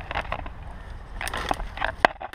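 Person scrambling through undergrowth over stone slabs: irregular rustling of leaves and twigs with scrapes and knocks, over a low rumble of camera handling.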